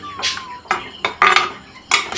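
Metal ladle scraping and clanking against the inside of a pressure cooker while stirring raw chopped vegetables, about four strokes over two seconds.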